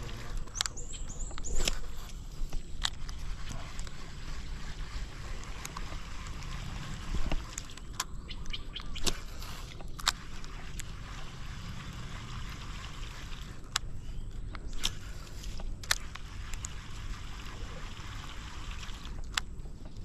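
Sharp clicks and taps of a baitcasting rod and reel being handled while casting and retrieving, about ten of them at irregular intervals, over a steady low outdoor rumble.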